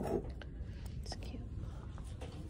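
A faint whisper-like voice over a low, steady background, with a couple of light clicks as a ceramic Easter figurine is handled on a display table.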